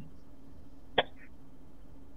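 Faint steady hum of room tone over a video call, with a single short click about a second in.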